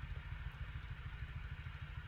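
A low, steady rumble of background noise with one faint click about a quarter of the way in.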